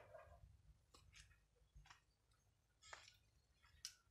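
Near silence, with a few faint, scattered clicks and rustles.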